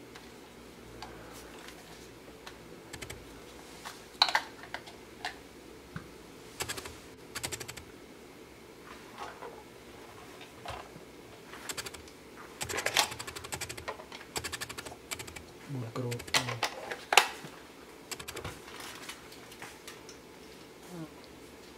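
Hard plastic clicks and clatter as the prop guards and propellers of a Syma X8W quadcopter are handled and fitted on a tabletop. The clicks come irregularly, in small clusters, with the sharpest one a few seconds before the end.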